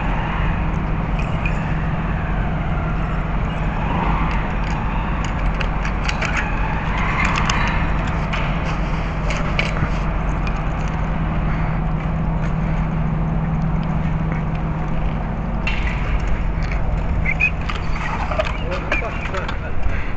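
Clicks and rattles of a bicycle being handled and wheeled, over a steady low hum.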